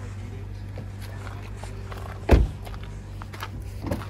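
Car door on a 2018 Honda Accord shut with one loud thump a little past halfway, then a short latch click near the end as the rear door handle is pulled. A steady low hum runs underneath.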